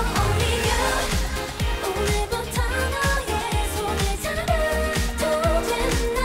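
K-pop girl group singing together over an upbeat pop backing track with a steady kick-drum beat.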